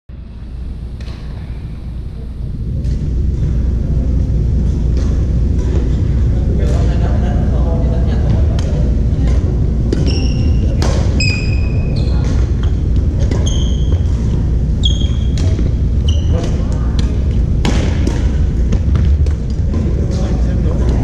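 Badminton play in a gymnasium: sharp racket hits on the shuttlecock throughout, with sneakers squeaking briefly on the wooden floor several times in the middle stretch, over a steady low rumble of the hall with voices.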